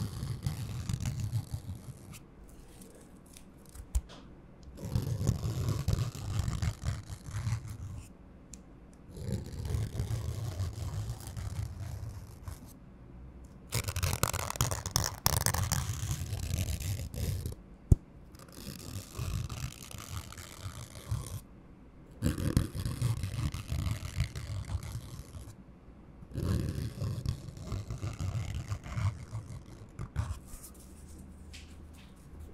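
Paper rubbed and scratched against a foam microphone windscreen in repeated bursts of two to three seconds with short pauses between them, a low, heavy scraping from the foam. The burst a little past the middle is brighter and crisper, like paper crinkling right at the microphone.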